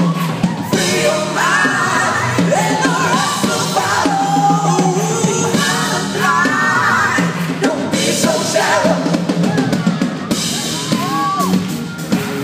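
Live band performing a song: a male lead singer with backing vocals over drum kit, bass and keyboards, steady and loud.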